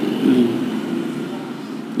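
A man's voice is heard briefly and faintly near the start, over a steady low background hum that slowly fades.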